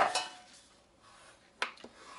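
Cardstock being handled and folded on a cutting mat: a knock and rustle of the card at the start, then a quiet stretch and a sharp tap of a hard folding tool about a second and a half in, followed by a couple of lighter ticks.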